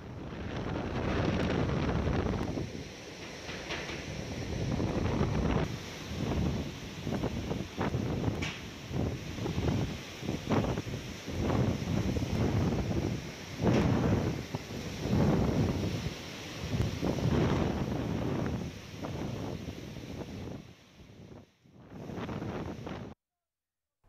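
Cyclone wind gusting hard and buffeting the microphone in uneven surges, with a brief lull near the end.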